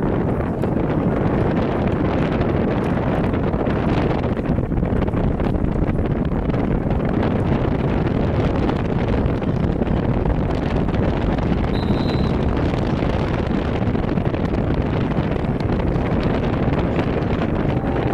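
Wind blowing across the microphone: a steady low rushing noise that fills the whole stretch, with a brief faint high tone about twelve seconds in.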